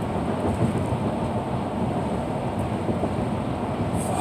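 Steady low road and engine rumble heard inside the cabin of a vehicle driving at speed.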